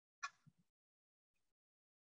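Near silence, broken by one short sharp click about a quarter second in and a soft knock just after: small kitchenware being handled on a worktable.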